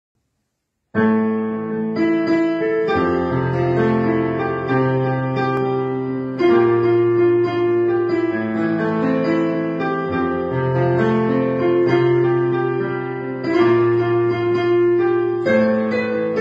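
Digital piano played with both hands, starting about a second in: held bass notes under chords and a melody, the harmony changing every second or two.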